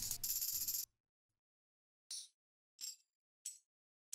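Tambourine one-shot samples auditioned one at a time: three short, bright jingle hits starting about two seconds in, each well under a second apart. Before them, a bright noisy sound stops abruptly just under a second in.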